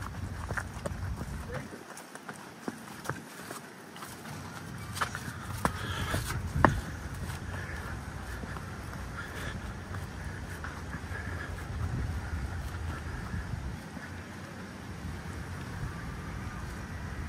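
Footsteps on stone paving with scattered sharp clicks and knocks, the loudest about six and a half seconds in, over faint voices and outdoor background.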